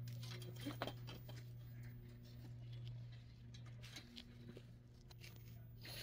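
Faint, sparse clicks and taps of metal trellis poles and a wire clip being handled and fitted together, over a steady low hum.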